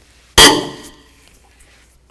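A tight steel strut-mount nut breaking loose under a breaker bar on a 14 mm socket: one sharp metallic crack about half a second in that rings briefly and dies away.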